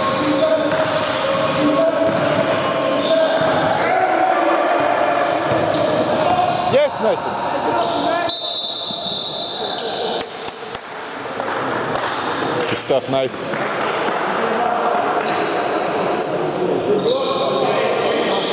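Sounds of a basketball game in a large sports hall: a ball bouncing on the wooden court, trainers squeaking sharply a couple of times, and players' voices calling out.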